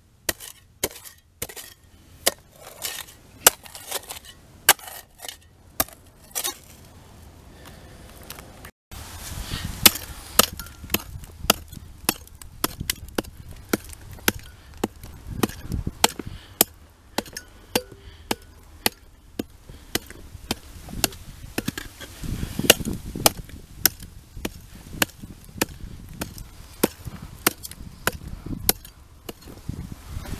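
Steel shovel blade struck again and again into rock-hard packed dirt, chiselling it loose: sharp chopping impacts about one to two a second, with gritty scraping of soil between strikes.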